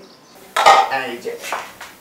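Metal cookware clattering on a kitchen gas stove: a loud clank about half a second in, then a few lighter knocks, as a pot is set up to heat water for tea.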